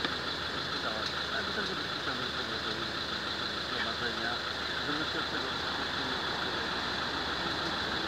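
A van engine idling steadily, under quiet, low conversation.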